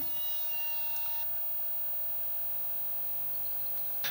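Quiet, steady electrical hum from powered-up video equipment. For about the first second a faint thin whine sounds, then cuts off, as the Sony Mini DV Video Walkman starts playing a tape.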